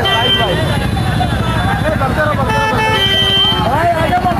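Vehicle horns honking in two blasts, a short one at the start and a longer one about two and a half seconds in, over shouting voices and the low rumble of vehicles.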